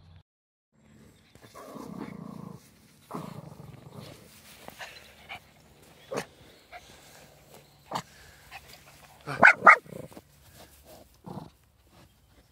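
Animal noises at close range: two long, rough, breathy sounds in the first half, then a pair of short sharp calls about nine and a half seconds in, the loudest part.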